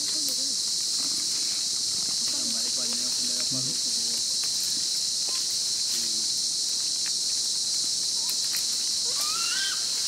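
Steady, high-pitched chorus of rainforest insects. Faint distant voices sit beneath it, and a few high rising calls come near the end.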